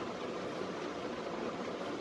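Steady, even background hiss of room tone, with no distinct event.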